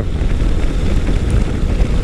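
Wind buffeting the microphone while riding a Yamaha FJ-09 at steady speed, with its inline-three engine running underneath.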